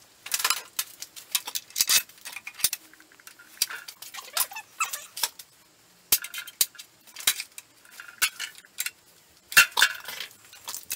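Irregular metallic clicks, clinks and short scrapes from the Porter-Cable PCE700 chop saw being adjusted and handled while its blade is squared up, with a louder clack near the end.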